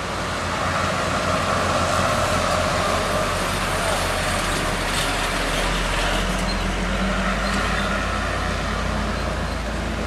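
Heavy diesel truck engine pulling up a steep hairpin bend under load, a steady low rumble, with other road traffic passing.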